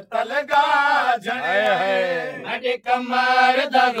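Men chanting a Shia noha (Muharram lament) in long drawn-out notes, the pitch bending up and down on held vowels between short breaks.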